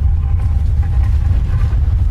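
Loud, steady, deep rumble sound effect under an animated logo reveal, with a faint high tone above it.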